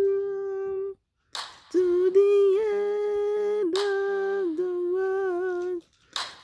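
A woman's unaccompanied wordless singing, humming long held notes at a steady pitch. The notes break off about a second in, and a quick breath is taken before they resume.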